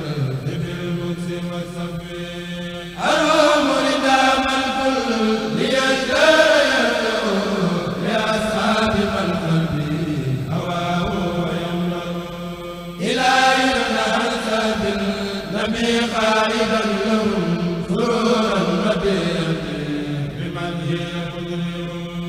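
Men's voices chanting Arabic devotional verse (a qasida in praise of the Prophet) in long, drawn-out melodic lines with held notes. Louder new phrases come in abruptly about three seconds and thirteen seconds in.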